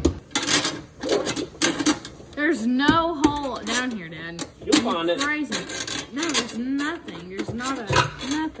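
Voices talking, mixed with a series of light clicks and knocks from a sealed-beam headlight being handled and pressed into its fender housing.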